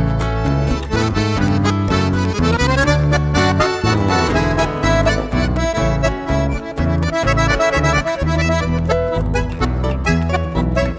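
Instrumental break of a chamamé: a piano accordion plays the melody over strummed acoustic guitar and an acoustic bass guitar, with a quick run of notes about three seconds in.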